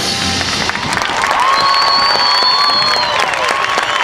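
A high school marching band's brass and percussion holding a final chord that cuts off within the first second. Then a crowd applauds and cheers, with long drawn-out shouts rising above the clapping.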